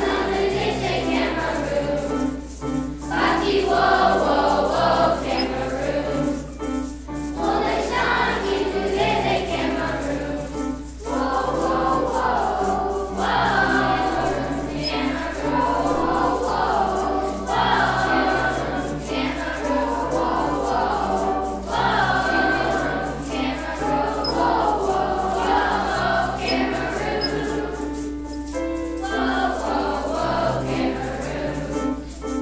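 Children's choir of fifth and sixth graders singing in phrases a few seconds long, with piano accompaniment.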